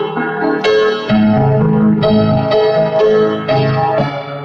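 Solo piano playing: chords struck about twice a second, with notes held ringing over them.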